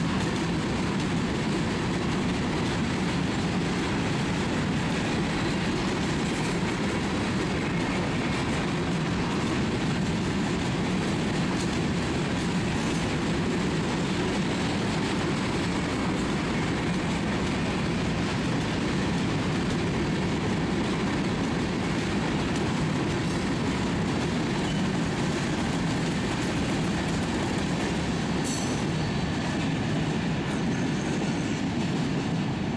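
Freight train's covered hopper cars rolling past on the rails: a steady, continuous rumble of steel wheels on track.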